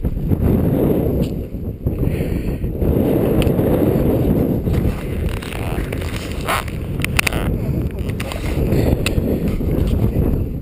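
Wind noise on a body-worn camera's microphone during a downhill telemark ski run, mixed with skis scraping over packed snow. A few sharp knocks come about seven seconds in.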